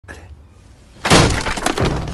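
A sudden loud crash about a second in that rings on and slowly dies away.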